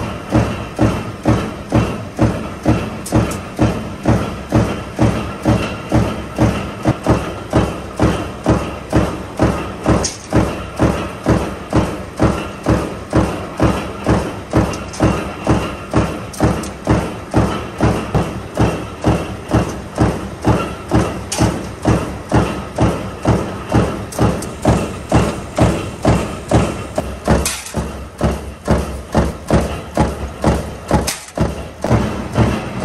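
Steel-lamination stamping press running continuously, punching and stacking fan-motor core laminations. It gives a steady, even thump a little under twice a second over a steady machine drone.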